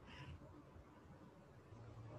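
Near silence: faint room tone on an online call, with one faint, brief high-pitched sound just after the start.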